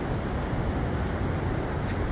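Steady low rumbling noise of wind buffeting the phone's microphone outdoors, with no distinct events.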